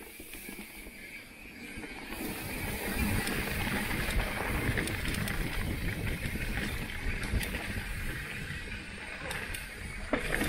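Mountain bike rolling downhill on a dirt trail: wind rushing over the bike-mounted microphone and tyres rumbling over the ground, with scattered sharp clicks and rattles from the bike. It grows louder about two seconds in as the bike gathers speed.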